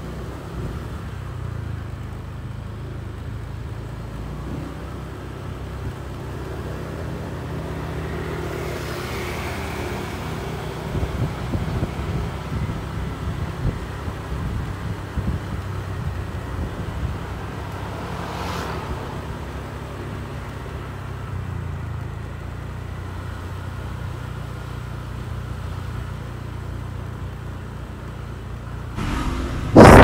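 Small motorbike engine running steadily at low riding speed, a low hum with road rumble. It swells louder about nine seconds in, and a short rush passes a little past the middle.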